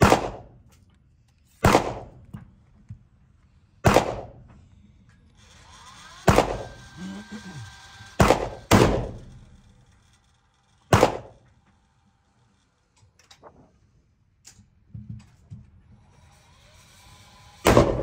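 Eight sharp gunshots echoing in an indoor range, irregularly spaced, the last near the end. Between them an electric target carrier hums with a steady whine while a paper target travels back along the lane.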